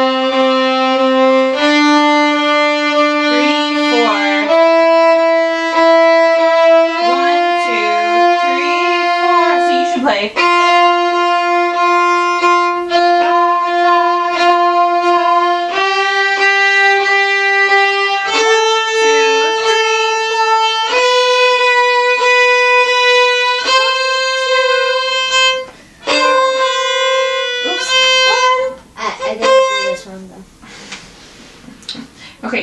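Two violins playing a beginner rhythm exercise together: long bowed notes stepping upward through a scale, one part playing steady quarter notes against the other's mix of quarters and half notes. The playing stops near the end.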